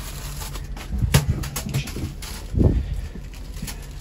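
A few knocks and bumps of things being handled in a wooden drawer, the loudest a dull thump a little past halfway, over a low steady hum.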